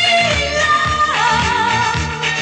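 Upbeat pop song with a steady beat and a sung melody on long held notes with vibrato, the voice sliding down to a lower held note a little after a second in.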